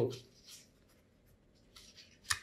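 A man's voice trails off at the end of a word, followed by a pause of near silence in a small room with a couple of faint soft sounds.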